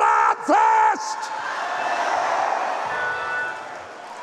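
A man's voice giving a few loud, pitched shouts in the first second, the chanted cries of a preacher at a climax. They are followed by congregation noise with music underneath, which grows quieter near the end.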